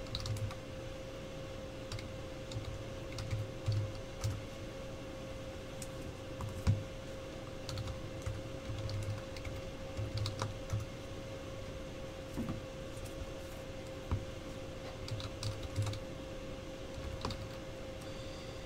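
Typing on a computer keyboard: irregular keystroke clicks in short runs, over a steady faint hum.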